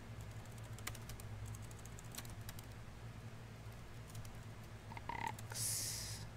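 Computer keyboard typing: scattered, irregular keystrokes over a faint low hum, with a short hiss near the end.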